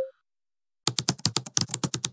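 Computer keyboard typing: a quick run of keystrokes, about ten a second, starting about a second in.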